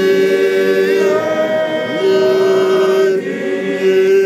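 A group of men singing a hymn together without accompaniment, holding long, steady notes.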